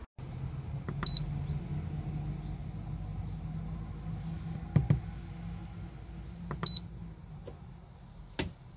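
Simrad autopilot controller giving two short high key beeps as its knob is pressed to answer calibration prompts, one about a second in and one near the end, with a sharp click between them. A steady low hum runs underneath and fades near the end.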